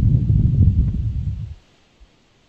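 A low rumbling, rustling noise on the microphone of a video-call line, lasting about a second and a half and then cutting off sharply.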